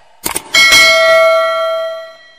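Notification-bell sound effect: two quick clicks, then a single bell strike that rings with several clear tones and fades away over about a second and a half.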